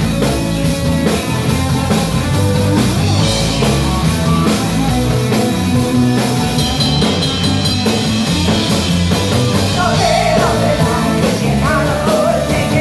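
Live rock band playing loudly: drum kit, electric guitar and bass, with a woman's lead vocal coming in about ten seconds in.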